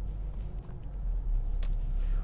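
Steady low road and engine rumble inside a moving car's cabin at motorway speed.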